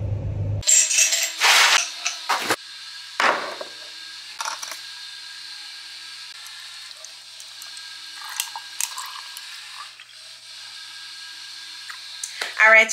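Ice cubes clattering into a glass mason jar in a few loud, short bursts over the first four or five seconds. A quieter stretch with a steady faint hiss follows, with soft liquid sounds around the ninth second as a drink is poured over the ice.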